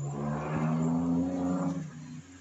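A motor vehicle engine droning steadily at a held pitch, dying away shortly before the end.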